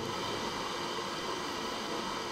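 Steady background hiss and hum of room noise picked up by the microphone, with no other distinct event.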